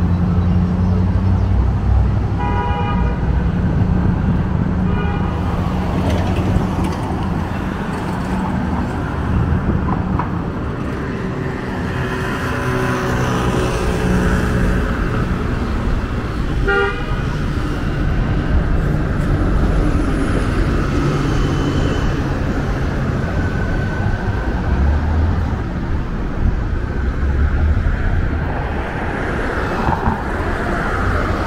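City street traffic: a steady low rumble of passing cars, with short car horn toots about two and a half seconds in, again around five seconds, and once more near seventeen seconds.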